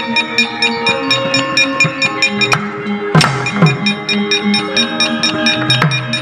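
Javanese gamelan playing: bronze metallophones stepping through a melody over a rapid, even clicking from the dalang's kecrek, with a heavier drum stroke about three seconds in.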